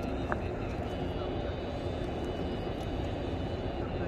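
Steady low outdoor rumble with indistinct voices of people talking in the background.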